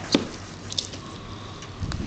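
Hands and a knife working at the neck of a plucked chicken carcass on a cutting board to cut out the crop. There is a sharp click just after the start, a few faint ticks, and low handling rumble near the end.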